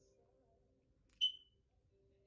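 A single short, sharp, high-pitched click about a second in, fading quickly, over faint singing.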